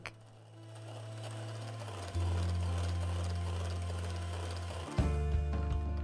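Electric hand mixer running steadily, its beaters whipping heavy cream in a stainless steel bowl toward stiff peaks. Background music with held low notes plays along, changing at about two seconds and again near the end.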